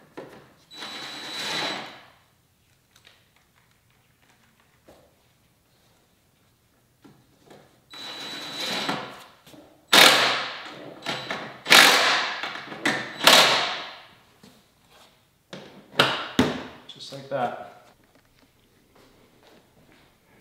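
Cordless drill/driver running in short bursts with a steady whine as it drives the scooter's seat bolts, once about a second in and again near eight seconds, followed by a run of louder, sudden sounds that fade quickly.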